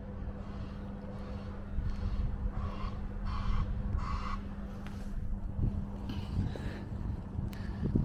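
Distant road traffic rumbling steadily with a low hum under it, and three short faint sounds a little under a second apart in the middle.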